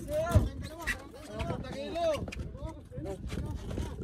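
People's voices talking and calling out, with a short thump about half a second in.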